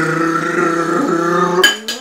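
A man's vocal drum roll: a voiced "brrr" trill held at one steady pitch for about two seconds, ending with a short sharp hiss.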